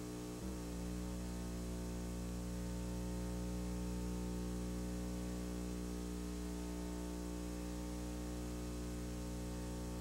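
Steady electrical hum made of several unchanging tones, with a slight shift about half a second in.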